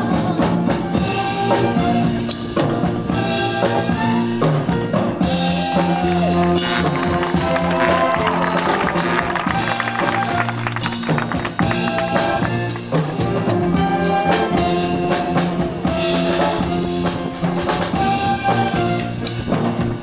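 A school band playing a song live, with drum kit, clarinets and saxophones and a singer on a microphone. The playing is steady, with regular drum strokes under the melody.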